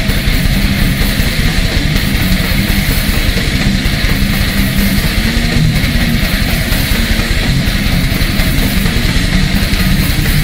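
Heavy metal band playing live: loud distorted electric guitars over drums, an unbroken instrumental passage.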